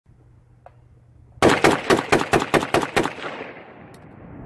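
Short-barreled AR-pattern rifle chambered in 7.62x39 and fitted with a Hardened Arms HD-SMC compensator, fired in a rapid string of about eight shots over a second and a half. The echo of the last shot trails off afterwards.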